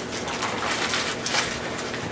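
A classroom of students laughing and murmuring together, a dense mix of overlapping chuckles and chatter with no single voice standing out.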